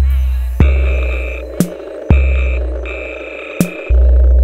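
Downtempo electronic breaks track: deep bass drum hits about every second and a half, alternating with sharp snare strokes, over a steady synth drone and short held synth notes.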